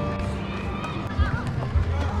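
A person's voice over a quieter stretch of the background music track.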